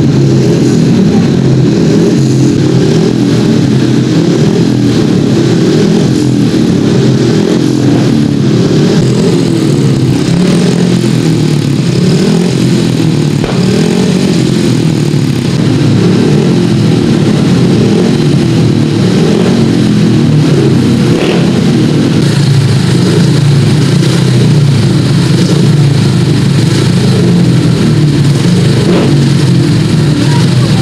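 Speedway motorcycles' single-cylinder engines running, a loud, steady din with no break.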